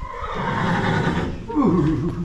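Horse whinnying, one long, loud call lasting about a second and a half.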